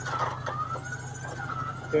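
Electric winch on a roll-off dumpster trailer running under load, pulling the dumpster up onto the trailer rails: a steady high whine over a low hum.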